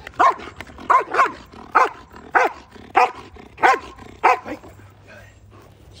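German shepherd protection dog barking to guard a man: about eight barks, roughly one every two-thirds of a second, stopping about four and a half seconds in.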